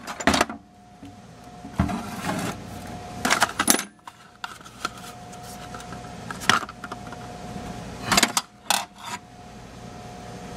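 Loose steel tools and valve-grinding pilots and stones clinking and rattling in a steel toolbox as a hand rummages through them. The clatters come in several separate bursts a second or two apart.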